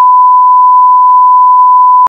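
Television colour-bars test tone: one loud, steady, unbroken beep at a single pitch.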